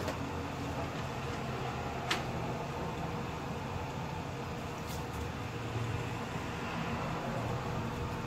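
Electric fan running steadily, with a sharp click about two seconds in and a fainter one near five seconds.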